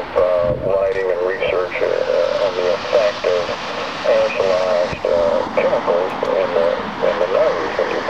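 A voice talking, narrow-sounding and muffled so the words can't be made out, over a steady hiss.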